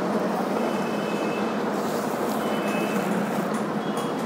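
Steady background hum and hiss, with two short, faint high-pitched tones.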